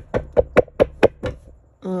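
A quick run of about seven knocks on a tabletop, roughly five a second, fading slightly toward the end, followed by a drawn-out spoken "um".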